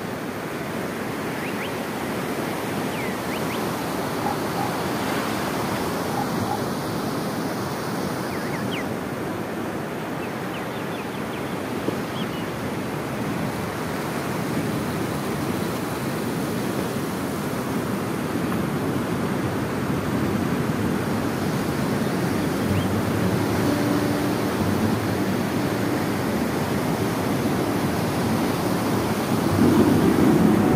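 Ocean surf breaking on a sandy beach: a steady rushing wash of waves that slowly swells and eases, with some wind on the microphone.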